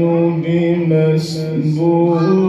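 A man reciting the Qur'an in the melodic qirat style, holding long, ornamented notes that bend and slide between pitches.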